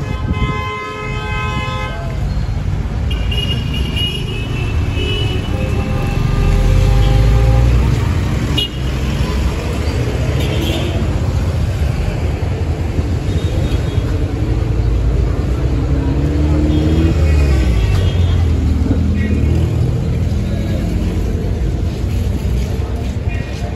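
Busy street traffic: vehicle horns honk several times, with a long honk of about two seconds at the very start and shorter ones later, over the steady low rumble of engines passing close by.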